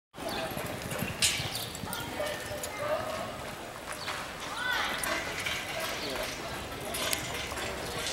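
A horse galloping a barrel-racing pattern on arena dirt, its hoofbeats under a background of voices, with one sharp knock about a second in.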